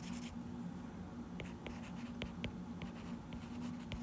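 Stylus writing on an iPad's glass screen: faint, irregular light taps and ticks as a word is handwritten.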